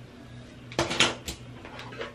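A quick run of three or four sharp clicks and clatters of small hard objects knocking together or against a hard surface, about a second in, over a faint steady hum.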